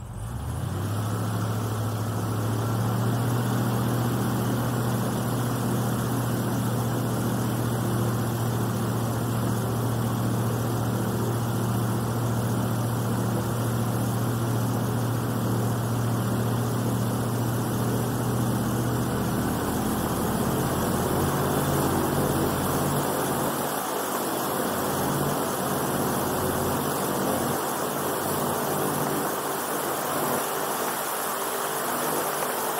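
Airboat's engine and propeller running under way, a loud, steady low drone that swells as the throttle comes up right at the start. About two-thirds of the way through the drone's tone shifts and a rushing hiss grows stronger.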